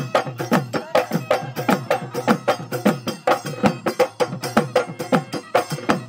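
Bihu folk music: Assamese dhol drums played in a fast, steady rhythm, many strokes dropping in pitch, with small taal cymbals clicking along.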